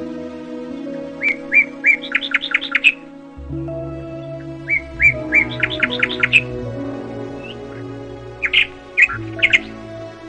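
Songbird singing three phrases, each a few spaced chirps running into a quicker series of notes, over soft sustained background music.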